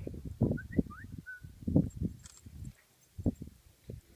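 Wind buffeting a phone's microphone in irregular low gusts. A few short, high chirps come about a second in.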